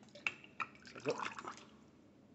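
Beer pouring from a bar tap into a glass mug and splashing, with two sharp clicks of glass or tap within the first second.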